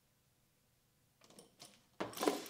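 Near silence, then a few faint clicks and rattles over about half a second near the end as a barbell loaded with bumper plates is pulled off the floor in a power clean.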